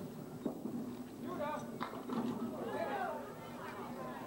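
Candlepin bowling: two sharp knocks of the small ball and wooden pins, about half a second and nearly two seconds in, with murmuring voices behind them.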